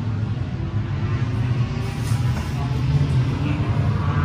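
A steady low engine rumble.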